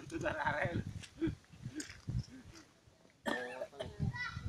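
Indistinct voices of people talking nearby, dropping away for a moment, with a voice coming in again near the end.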